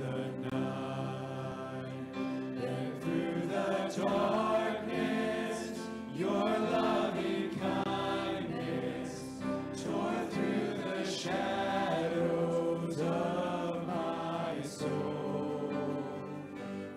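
Church worship band performing a contemporary worship song: several voices singing together in harmony over acoustic guitar, with the standing congregation singing along.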